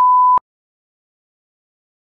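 A loud electronic beep on one steady pitch that cuts off with a click less than half a second in, followed by dead silence.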